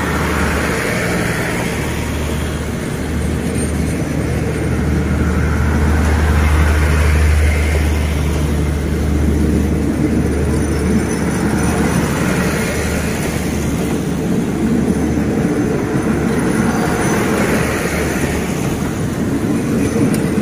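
Passenger coaches of an express train rolling past along the platform: a continuous rumble of wheels on rails over a steady low drone.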